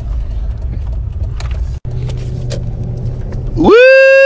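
Low, steady rumble of a car's cabin on the move, with a brief dropout about two seconds in. Near the end a voice lets out a loud, drawn-out "Woo!"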